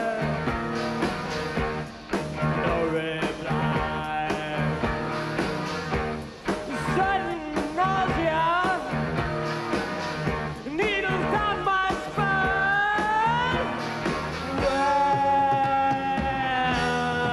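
Rock music with singing, loud and continuous, with held notes that glide up and down.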